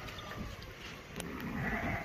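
A sheep bleating faintly near the end, with a short sharp knock a little past a second in.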